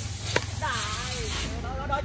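A badminton racket strikes a shuttlecock once, a sharp crack about a third of a second in, followed by players' voices over a steady background hiss.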